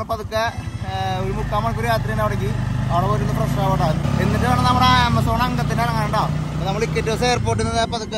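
A motorcycle-taxi engine runs with a steady low drone under a man talking, from about a second in until near the end.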